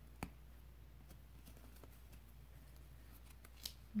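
Faint handling sounds of a steel darning needle and yarn being worked through crocheted stitches: one sharp click about a quarter second in, then scattered light ticks.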